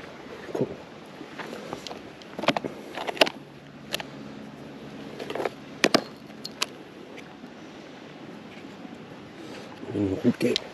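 Close handling noise of fishing tackle: scattered small clicks and rustles as fingers work a hook and a soft plastic lure, over a steady faint outdoor hiss.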